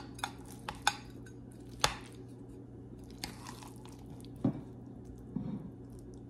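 Metal spatula tapping and scraping against a glass baking dish while cutting out and lifting a serving of baked pasta casserole: several sharp clicks in the first two seconds, then softer scraping and a duller knock, with a soft squish near the end as the portion comes free.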